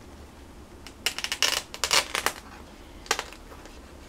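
Hands handling a cardstock paper binder on a tabletop: a quick cluster of crisp paper rustles and clicks about a second in, then one more click near the end.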